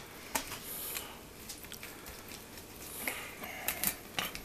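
Pizza cutter wheel rolling through a deep-dish pizza, with scattered short clicks and scrapes as the blade cuts the crust and meets the pan.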